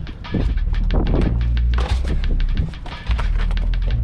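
Background music with a heavy, steady bass line and a driving beat.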